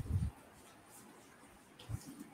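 A few low thuds and knocks at the start, stopping about a third of a second in, then quiet room tone with one more short thud just before the end.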